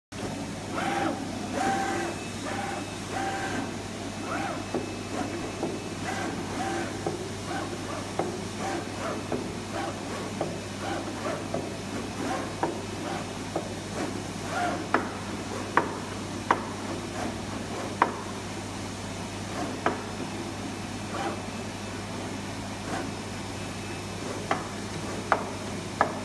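VulcanTec FC-500VC flatbed cutting plotter at work creasing card: its carriage motors whir in short pitched moves, many in quick succession at first. Later come several sharp clicks, the loudest sounds, over a steady low hum.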